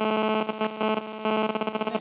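Loud electrical buzz at a steady low pitch with many overtones, breaking up into rapid stutters many times a second.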